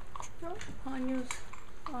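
A few light clicks and taps from a Japanese Chin puppy's claws on a hardwood floor, with a woman's short wordless vocal sounds in the middle.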